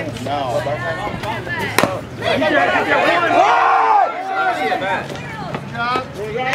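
Baseball spectators talking and shouting, growing loud about two seconds in, just after a single sharp crack.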